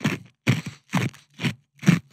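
Mock ASMR mouth sounds made close to a podcast microphone: a string of about five short clicks and smacks, roughly two a second, with quiet gaps between.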